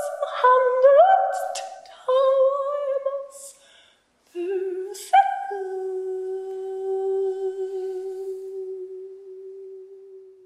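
Wordless operatic singing: a voice in short sliding phrases, a brief break about four seconds in, then one long held note that slowly fades toward the end.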